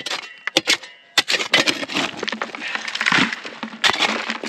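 A wooden-handled pick digging into rocky, gravelly ground. A few sharp strikes come in the first second or so, then steady scraping and crunching of dirt and stones, with one more sharp strike near the end.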